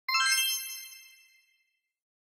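A bright, high chime of several tones, struck once just as the sound begins and fading away within about a second and a half: an electronic logo sting for a production company's intro.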